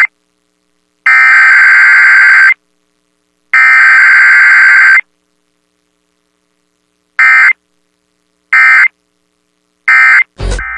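Emergency Alert System SAME digital data bursts, a harsh warbling two-tone buzz: two long header bursts about a second apart, then, after a pause, three short end-of-message bursts.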